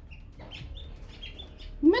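Faint chirping of small birds: a few short, high chirps, with a woman's voice cutting in near the end.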